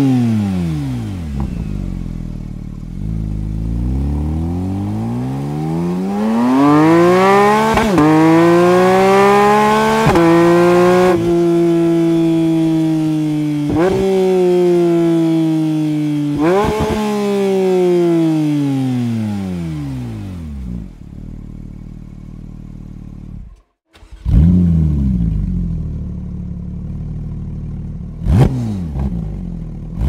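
Porsche 911 GT3 (992) flat-six engine through an Akrapovič titanium Slip-On Race Line exhaust, revving: the pitch climbs over several seconds, holds high with several sharp blips, then falls away. After a short break, the engine revs again, with sharp blips near the end.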